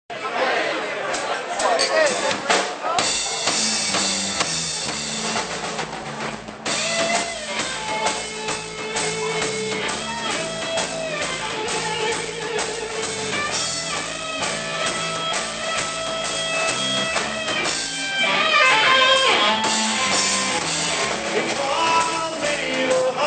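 Live band playing an instrumental opening: electric guitar with held, bending notes over a bass line and a steady drum-kit beat.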